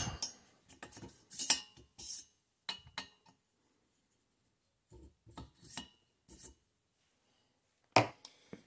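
Light metallic clinks and taps as a steel tool shaft is worked into the valve guides of a small-engine cylinder head, metal knocking against metal. There is a run of short clicks in the first few seconds, a pause, then another short cluster a little past the middle.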